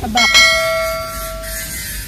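Notification-bell sound effect of a subscribe-button animation: a bell struck twice in quick succession, ringing with several tones and fading out over about a second and a half.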